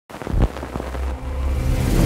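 A low rumble that builds steadily in loudness, with a few sharp clicks in the first second.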